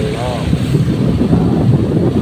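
Wind buffeting the microphone of a moving vehicle, over a steady low rumble of engine and road noise.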